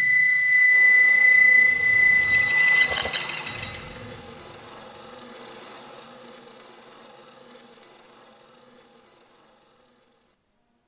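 Concert flute holding one high, steady note for about three seconds, broken by a fluttering flicker just before it ends. A soft buzzing texture follows and fades away gradually to silence.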